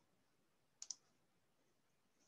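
Near silence, broken a little under a second in by two quick clicks close together.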